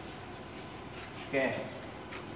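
Steady background hum of an electrical plant room's switchgear, with a faint constant high-pitched whine; a man briefly says "oke" in the middle.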